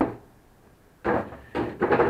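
Aluminium robot chassis knocked and shifted on a wooden workbench: a sharp knock at the start, then a few more bumps and handling scrapes from about a second in.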